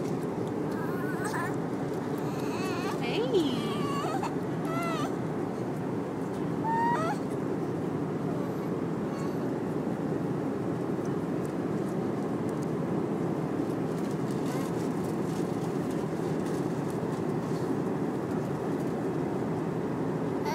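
Steady airliner cabin noise, with a baby's short high squeals and coos in the first seven seconds or so.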